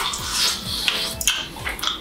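Two people chewing bites of crispy pizza, with wet lip-smacking and short crunchy clicks, over background music with a regular low beat.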